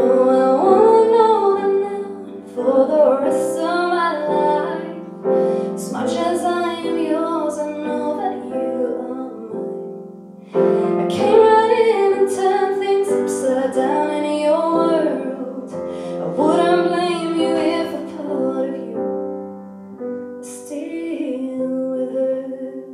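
A woman singing a country song live, accompanying herself on a grand piano, her voice in sung phrases over sustained piano chords.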